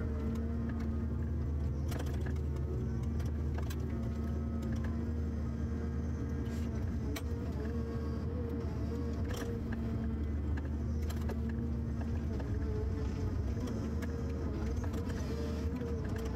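Forestry harvester running steadily at working revs, a low engine drone with a steady whine over it, and scattered sharp clicks and knocks from the harvester head handling trees.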